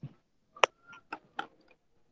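A few short, sharp clicks, about four in under two seconds, the loudest a little over half a second in.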